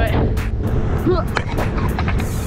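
Scooter wheels rumbling over rough, cracked concrete, under background music with an even beat of about four ticks a second and a short vocal phrase about a second in.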